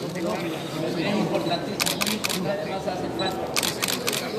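Camera shutter clicks in quick runs of two or three, about two seconds in and again near the end, over the chatter of a crowd.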